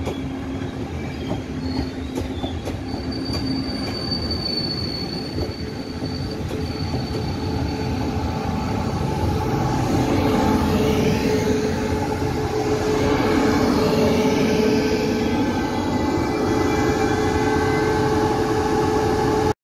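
Taiwan Railways E1000 push-pull Tze-Chiang express braking into a station: a continuous rolling rumble with thin high wheel and brake squeals in the first few seconds. From about halfway the electric power car draws near and a steady hum from its equipment grows louder as the train slows to a stop.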